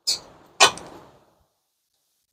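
Two metal clunks about half a second apart, the second louder, each fading quickly: a removed brake caliper knocking against the suspension as it is set aside.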